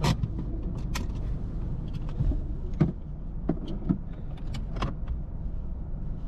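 Scattered small clicks, knocks and rattles of things being handled inside a stationary car, over a steady low rumble.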